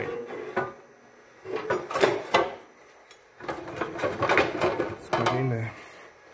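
Irregular metal knocks, clicks and clatter from handling a steel workpiece at an abrasive cut-off saw, with the saw not running, plus a few short indistinct vocal sounds.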